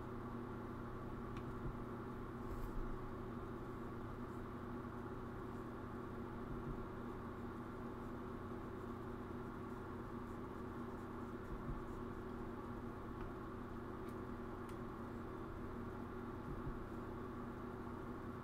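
Steady room tone: a low electrical hum with a few fixed tones over a faint hiss, broken by a few faint clicks.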